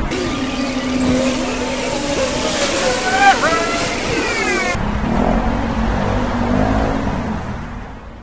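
City street sound: traffic noise with cars going by, mixed with people's voices, fading out near the end.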